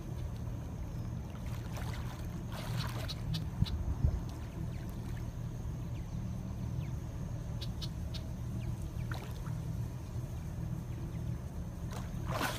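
Small splashes and sloshes of water from a person struggling underwater while hand-fishing for a catfish, over a steady low rumble. Two sharp knocks come about four seconds in.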